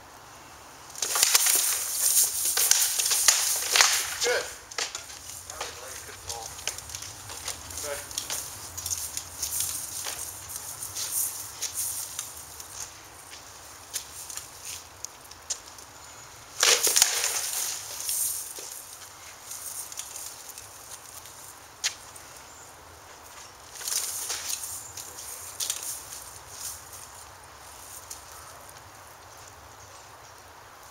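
Armoured sword-fighting bout: flurries of sharp knocks and clatters as weapons strike each other, the shield and the armour. The longest flurry comes about a second in and runs for a few seconds, another comes a little past the middle and a shorter one later, with single knocks and shuffling between.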